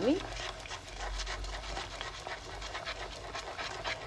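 A wooden spoon stirring caramel sauce quickly in a nonstick pan: fast, irregular scraping and sloshing strokes through the hot sugar, butter and cream as it is brought toward a boil over low heat.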